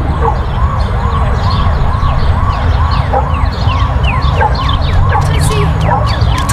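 Emergency vehicle sirens in a rapid yelp, rising and falling about two and a half times a second, with a second, higher siren sweeping downward over and over, more often toward the end, over a low rumble.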